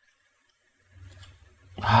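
A deep, low rumbling drone from a horror movie trailer's soundtrack. It starts about a second in and swells quickly to loud near the end.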